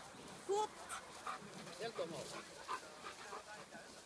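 A Bernese mountain dog giving a short, high yelp about half a second in, followed by a few softer whines as it heels and jumps up at the handler's hand, with a voice faintly under it.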